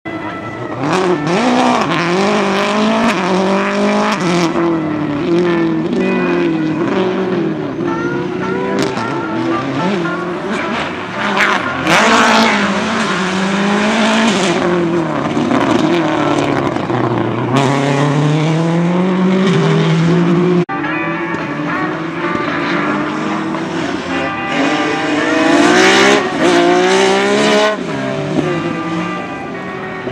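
Rally cars driven hard past the spot one after another, engines revving up and dropping back over and over with gear changes and lifts for corners. There is a sudden cut about two-thirds of the way through.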